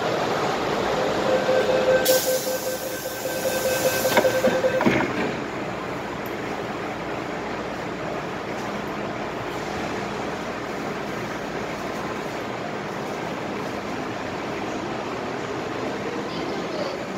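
MTR M-Train electric multiple unit: a steady tone with a hiss for about three seconds, ending in a couple of knocks as the doors close, then the train's even running noise as it pulls out and moves along.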